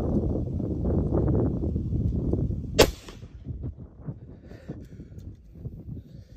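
A single rifle shot: one sharp crack about three seconds in. Under it runs a dense low rumbling noise, which stops when the shot goes off.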